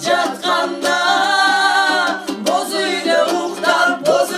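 Several women and men singing a song together, a woman's voice carrying a long held note about a second in, with a komuz plucked along.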